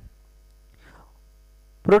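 Steady low electrical mains hum during a pause in speech, with a faint soft rustle about a second in. A man's speech starts again near the end.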